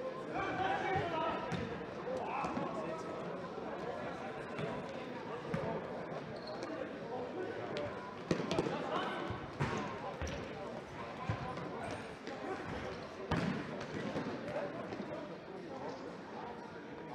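Indoor soccer ball being kicked and bouncing on a sports-hall floor, with a few sharp thuds, the loudest about eight and thirteen seconds in. Players and spectators shout and chatter throughout, echoing in the hall.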